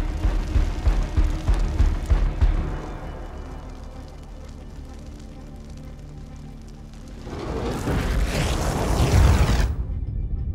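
Dramatic film score: loud, deep low notes for the first couple of seconds, then a quieter stretch of held tones, then a swell that rises and cuts off suddenly near the end.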